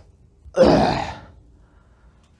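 A man clears his throat once into a handheld microphone, a short, rough burst about half a second in that lasts under a second.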